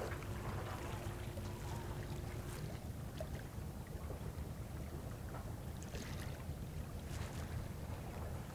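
Low, steady seaside rumble of wind and water against the breakwater, with a few faint ticks.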